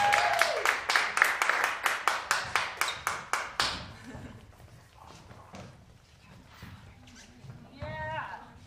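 Audience applauding, with a whoop near the start, fading out about four seconds in. A single voice calls out briefly near the end.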